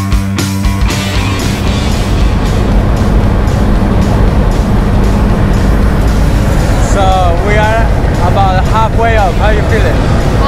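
Rock music stops about a second in, giving way to the loud, steady noise of the jump plane's engines heard inside the cabin. Voices come in over the engine noise from about seven seconds in.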